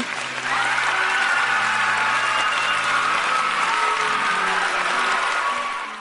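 Applause over soft background music, starting as the recitation ends and fading out near the end.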